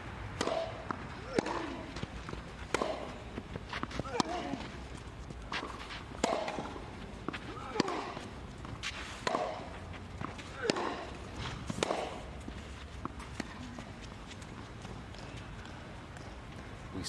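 Tennis rally on a clay court: a racquet hitting the ball about every second and a half, around ten shots in all, most with a short grunt from the player hitting, ending about twelve seconds in.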